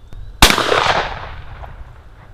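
A single shotgun shot from the right-hand barrel of a Baikal IJ-58MA side-by-side, about half a second in, with its echo tailing off over about a second.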